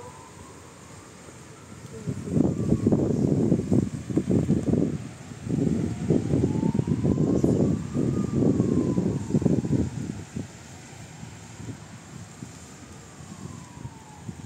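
A siren wailing slowly up and down, each sweep lasting a few seconds, over a loud, ragged low rumble that swells about two seconds in, dips briefly near five seconds and dies away about ten seconds in.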